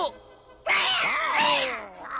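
Cartoon cat yowling: one long call with a wavering pitch, starting a little over half a second in and lasting about a second and a quarter.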